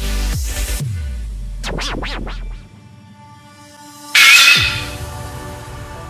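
Electronic background music with falling bass sweeps, then a few quick scratch-like up-and-down sweeps about two seconds in. After a short lull, a sudden loud noise hit about four seconds in, after which quieter music carries on.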